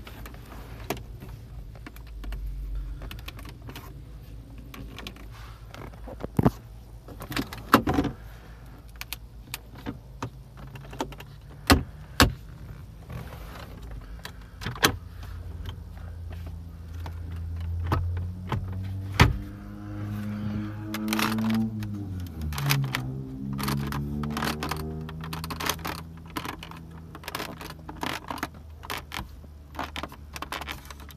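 Hands tapping, pressing and handling the interior trim and glove box of a 2017 Mercedes-Benz CLS550 inside the cabin: a scattered series of sharp clicks and knocks over a steady low hum. In the second half a droning hum rises slowly in pitch for a few seconds, then falls away.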